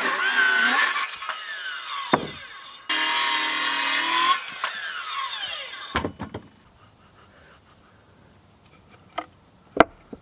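Cordless circular saw cutting a wooden board in two bursts, the motor winding down with a falling whine after each. A single knock follows about six seconds in, then only a couple of faint clicks.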